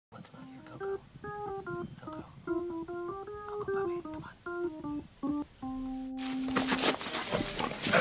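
A short melody of separate notes on a keyboard instrument, ending on one held low note. About six seconds in, a loud rushing noise cuts in suddenly.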